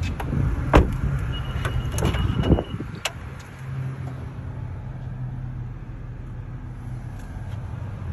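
Car doors being handled on a Honda Accord: a few knocks and clicks in the first three seconds, the loudest about a second in, then a steady low hum.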